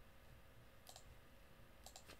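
Near silence: room tone with faint computer clicking, two quick double clicks about a second apart.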